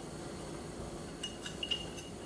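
Quiet room tone with a few faint, light clinks about a second and a half in, as a small glass and a whisk are handled over a pot.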